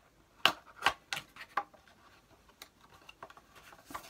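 Hands handling a travel mug and its packaging: a few sharp clicks and knocks in the first two seconds, then lighter scattered ticks.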